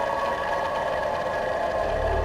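Ambient background music: a steady drone of several held tones, with no beat.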